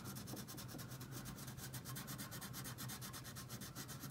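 Wax crayon rubbing on paper in fast, even back-and-forth colouring strokes, faint and scratchy.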